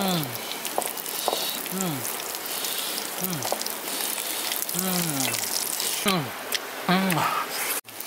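Leaf-wrapped rolls frying in oil: a steady crackling sizzle with fine pops. Over it, a short, low call that falls in pitch repeats about every second and a half.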